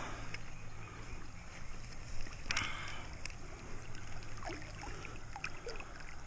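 Creek water running steadily, with small clicks and rustles of a trout being handled in a landing net, and one brief louder rush of noise about two and a half seconds in.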